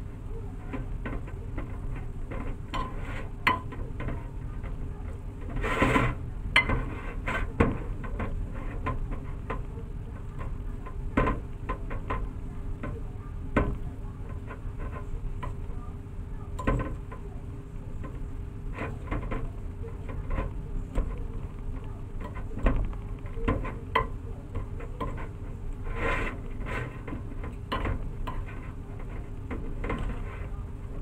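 Metal fork clicking and scraping against a ceramic plate while mashing steamed purple sweet potato, in irregular taps with a few louder clusters. A steady low hum runs underneath.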